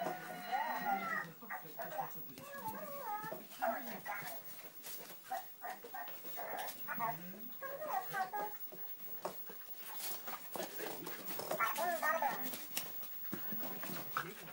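Playing dogs, a bull terrier puppy among them, making many short, wavering whining vocal sounds, with scattered light clicks and knocks.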